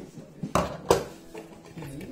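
Plastic parts of an OXO pump salad spinner knocking and clattering as its basket of lettuce is handled and lifted out of the clear bowl. Two sharp knocks come about half a second and a second in, with lighter clatters around them.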